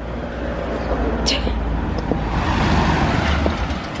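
A road vehicle passing close by: its noise builds to a peak about three seconds in and then falls away.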